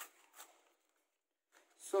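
Two brief rustles of paper packaging being handled, the second about half a second after the first.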